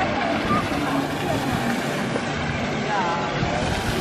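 Steady rush of water splashing in a large public fountain, with a crowd chattering around it.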